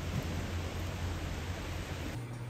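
Steady hiss of heavy rain falling, with a low rumble underneath.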